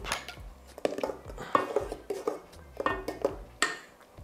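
A metal spoon scraping out a ceramic bowl and clinking against a stainless steel mixing bowl while stirring the egg-yolk and cream liaison into the soup: a series of short clinks and scrapes, some with a brief ring.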